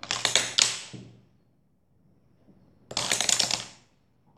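Rapid clattering of a homemade toy of two pencils joined by a rubber band as it spins and flaps. Two bursts of quick clicks, each about a second long: one at the start and one about three seconds in.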